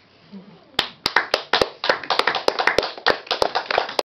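A small audience's applause, hand-claps starting about a second in and quickly filling out into steady clapping at the end of the performance.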